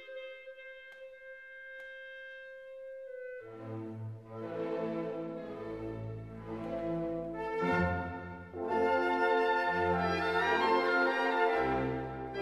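Orchestral background music: one note held on a wind instrument for about three seconds, then the full orchestra comes in with brass and a bass line.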